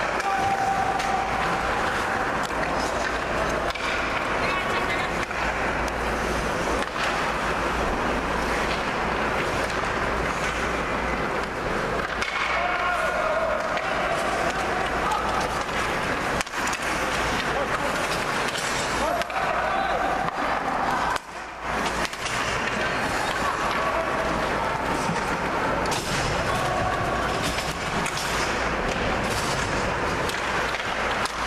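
Ice hockey game sound from the stands: skate blades scraping and carving on the ice, with sticks and puck clacking now and then and occasional shouted voices.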